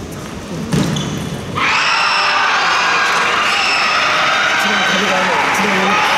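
Table tennis ball clicking off bats and table in a short rally, with a sharp hit under a second in. About a second and a half in, a loud, sustained cheer of many voices starts suddenly and carries on.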